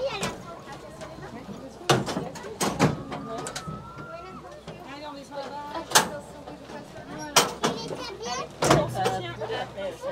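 People talking, punctuated by several sharp knocks and clunks; a low steady hum comes in near the end.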